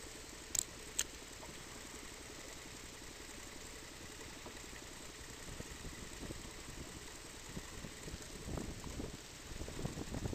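Small outboard motor idling with a steady low pulsing drone, with two sharp clicks about half a second and a second in. Uneven splashy water noise grows louder over the last two seconds.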